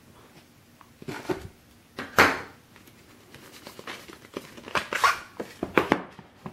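Serrated kitchen knife slitting the seal stickers on a cardboard phone box: a few short scraping, tearing strokes, the loudest about two seconds in, then several more in quick succession near the end.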